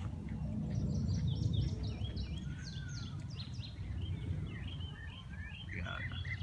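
Songbirds chirping in quick series of short high notes, thickest in the first half, over a steady low rumble.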